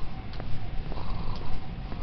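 Uneven low rumble of wind and handling noise on a camera being carried at speed, with a faint steady whine and a few light ticks.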